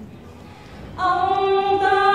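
Unaccompanied Vietnamese quan họ folk singing. After a brief pause, a woman's voice comes in about a second in on a long held note.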